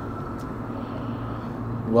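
Steady low background hum with a faint haze of outdoor noise, and one faint click about half a second in.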